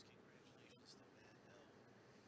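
Near silence: room tone, with one faint click about three-quarters of a second in.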